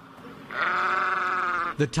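A sheep bleating once, a single long wavering bleat lasting a bit over a second, preceded by faint background noise.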